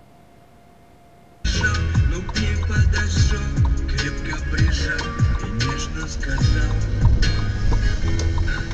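A faint steady hum, then loud music starts suddenly about a second and a half in: a beat with regular drum hits and deep bass notes that slide in pitch.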